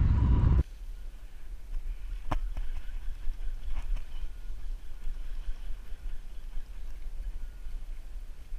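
Loud wind noise on the microphone that cuts off abruptly about half a second in, followed by a quieter, steady low rumble with a single sharp click about two seconds in.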